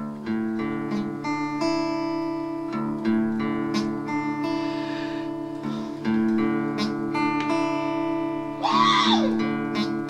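Acoustic guitar playing an opening passage of plucked notes that ring on. There is a brief vocal noise from the player about nine seconds in.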